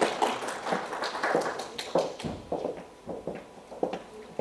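Small audience clapping, the claps thinning out after about two seconds, then a few single footsteps on a hard floor.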